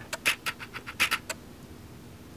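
Light clicking and rattling of a coiled USB power cable and its plastic plug being handled in a cardboard box, in two short clusters about a second apart.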